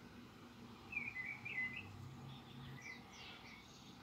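Faint bird chirps in the background: a few short ones in quick succession about a second in, and a couple more near three seconds, over a quiet room.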